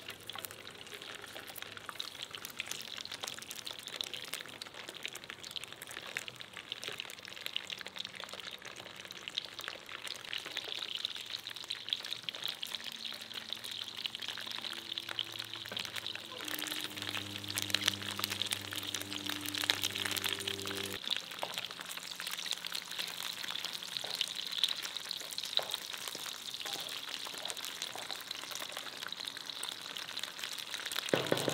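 Frankfurter sausages sizzling in hot oil in a non-stick frying pan, a steady dense crackle of fine pops throughout. Near the end a wooden spatula stirs them around the pan.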